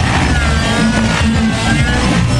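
Smoke-trailing radio-controlled model helicopter's glow engine and rotor running hard through aerobatic manoeuvres, the pitch wavering up and down as the load changes.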